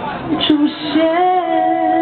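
A woman singing live to her own electric keyboard, holding one long, steady note from about a second in.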